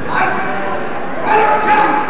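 Spectators shouting over one another, several voices at once, growing louder about a second and a half in.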